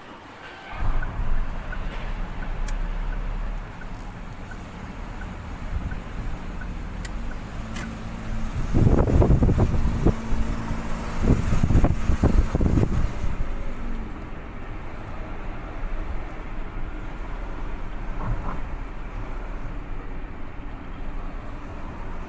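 Street traffic noise, a steady low rumble, which grows much louder for a few seconds from about nine seconds in.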